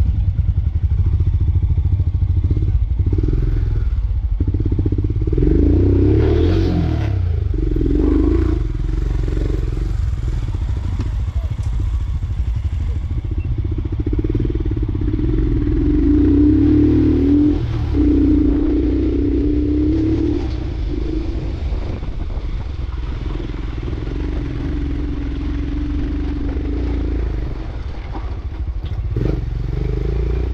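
Royal Enfield Himalayan's single-cylinder engine running as the motorcycle rides a rough dirt track, with clattering from the bike over the uneven ground.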